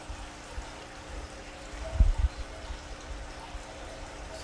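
Water running and trickling in a recirculating aquaculture system, with a faint steady hum beneath it. A low thump comes about two seconds in.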